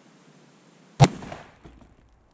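A single 30-06 Springfield rifle shot about a second in, firing a reduced-velocity load of 168-grain Nosler AccuBond Long Range bullets into ballistic gel: one sharp crack with a short tail dying away within half a second.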